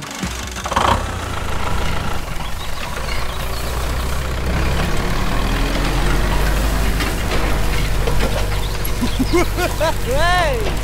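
Tractor engine running steadily with a low, even drone. A short laugh comes near the end.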